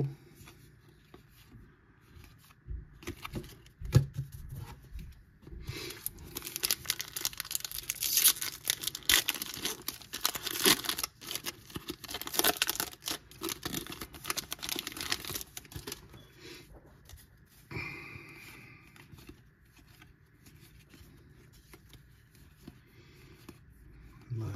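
Foil wrapper of a Topps baseball card pack being torn open and crinkled by hand: a dense crackle for about ten seconds in the middle. Before it comes a few soft clicks of cards being handled, with one sharp knock about four seconds in.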